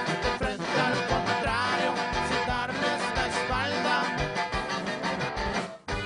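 A live corrido band playing loudly on stage, with a steady drum-kit beat under pitched melodic parts. The music drops out for a moment just before the end.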